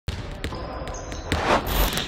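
A basketball bouncing several times on a hard court floor in a large hall, then a louder rising noise swell near the end.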